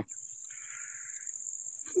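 A single harsh bird call lasting under a second, about half a second in, over a steady high-pitched drone of insects.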